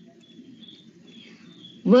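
Faint background hum under a thin, high-pitched chirping that comes and goes, then a voice starts reading again near the end.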